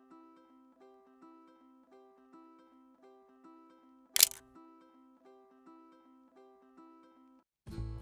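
Faint background music of light plucked notes in a repeating pattern, broken about four seconds in by a single sharp camera-shutter click. Near the end louder music with guitar and bass comes in.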